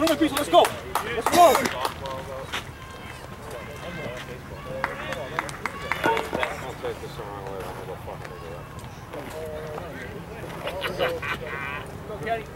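Voices of players and onlookers at a ball field: loud shouting in the first two seconds and again near the end, with fainter scattered calls and chatter between.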